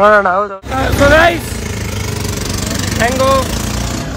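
Short bursts of a person's voice over a steady low rumble. The rumble starts abruptly about half a second in, and the voice comes in again about a second in and about three seconds in.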